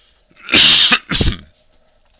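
A loud sneeze about half a second in, followed at once by a shorter second burst.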